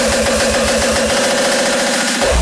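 Uptempo hardcore electronic music in a break. The pounding kick drum stops right at the start, leaving a loud, distorted synth holding one steady buzzing tone.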